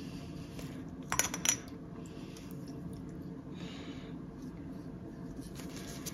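A quick cluster of light clinks on glass about a second in, with a brief high ring, over a faint steady background hum.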